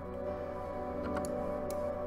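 Two layered Electra2 synth patches play a simple triad-chord melody as a soft, sustained pad-like tone. A half-time Gross Beat effect makes it swell in slowly.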